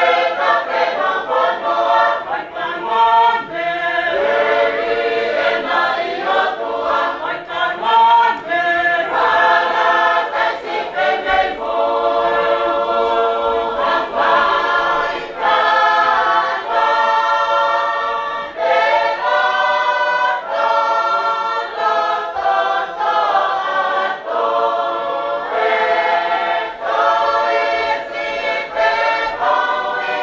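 A choir singing a hymn in several voices, in long held notes with short breaks between phrases.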